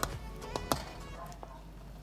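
Four short, sharp taps, the loudest a little under a second in, as glutinous rice balls are slid off a ceramic plate into a steel pot of simmering coconut milk: plate, wooden spoon and pot knocking together. Faint background music plays under it.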